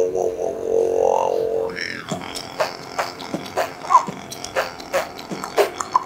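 Beatboxing done with the mouth and voice: a buzzing, droning bass note is held for about two seconds, then gives way to a steady beat of sharp clicks and snare-like hits, about three a second.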